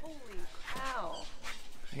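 Two short vocal calls, each sliding down in pitch; the second rises briefly before it falls.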